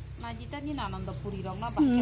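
Soft talking voices, louder near the end, over a steady low hum.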